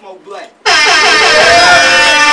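An air horn blasts suddenly and very loud about two thirds of a second in, over music, its pitch bending before it settles into a steady tone.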